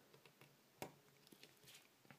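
Near silence, with a few faint clicks from a component being pressed into a plastic breadboard and the board being handled.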